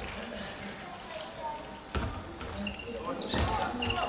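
Futsal ball thudding on a hardwood sports-hall court, one sharp thud about halfway through and more near the end, with short high shoe squeaks and players' voices echoing in the hall.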